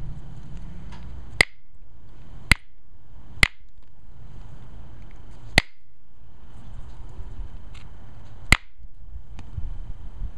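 Pressure flaking Alibates flint: sharp snapping clicks as flakes pop off the edge of the stone point under a pressure flaker. There are five loud snaps spaced irregularly a second or more apart, with a few fainter ticks between them.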